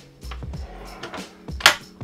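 Background music, with a single sharp knock from the wooden fold-out seat and breakfast bar being moved, about three-quarters of the way through; a few lighter knocks come before it.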